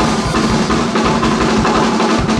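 Two drum kits played together in a live drum duet: a dense, fast run of kick-drum thumps, snare and tom strokes under a wash of cymbals.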